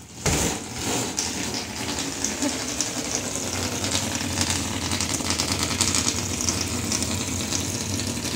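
A body lands on a large inflated air mattress with a thump. Air is then forced out through its small valve in one long, continuous, rattling buzz: a giant whoopee-cushion fart.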